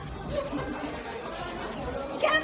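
Indistinct chatter of several people talking at once in the background, with no clear words.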